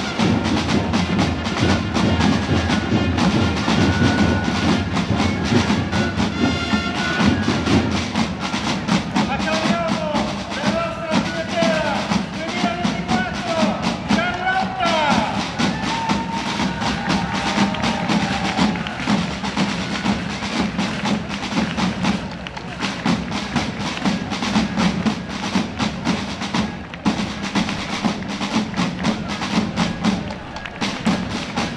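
Drums played in a fast, continuous roll-like beat, with voices calling out over them for a few seconds midway.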